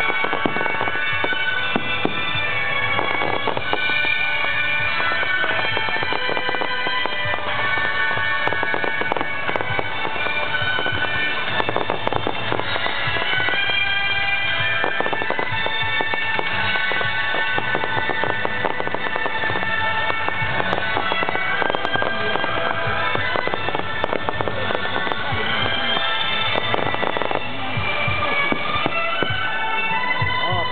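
Fireworks display: a dense, irregular run of aerial shell bursts and bangs throughout, with music playing alongside.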